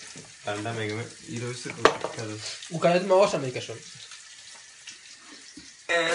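A man's voice in two short bursts of talk or laughter, with a single sharp click about two seconds in, then a faint hiss.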